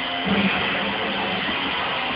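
Live rock band playing, led by electric guitar, as a dense, steady wash of sound with a louder accent about a third of a second in.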